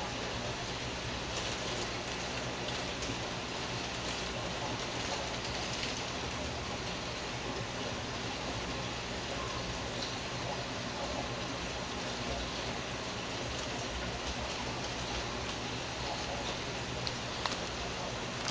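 Steady, even hiss of aquarium water and air bubbling from filters and airstones, with a low steady hum underneath.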